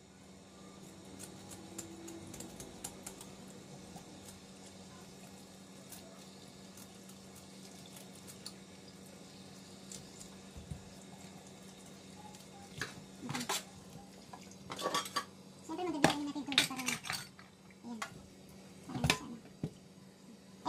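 Tap water running steadily into a stainless steel kitchen sink while kitchen scissors scrape scales off a whole fish, with scattered metallic clicks and clinks against the sink. The clatter grows louder and busier in the last several seconds.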